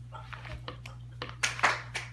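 A baby clapping his hands: a run of soft, quick claps, faint at first and louder and closer together in the last half second or so, over a steady low hum.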